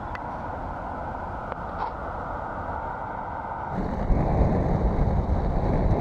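A steady outdoor hiss with a few faint clicks. About four seconds in it gives way to a louder, low rumble of wheels rolling on asphalt, with wind on the microphone.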